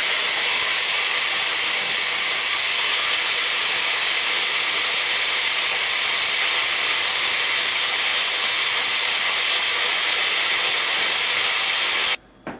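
Countertop blender running steadily at speed, grinding a dry mix of seeds (sesame, pumpkin, dill, linseed) and powder in its plastic jar.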